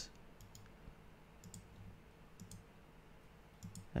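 Faint computer mouse clicks, mostly in close pairs, about a second apart, over a low steady room hum.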